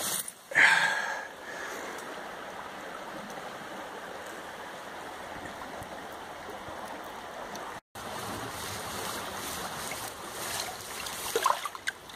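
River water rushing steadily, with a brief loud handling noise about half a second in and a split-second dropout a little past the middle.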